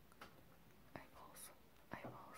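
Near silence with a few faint mouth clicks and a short breathy hiss, close to the microphone.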